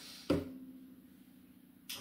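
A quiet pause between spoken sentences: a brief low vocal sound shortly after the start, then faint room tone with a quiet fading tone, and a sharp intake of breath near the end as speech is about to resume.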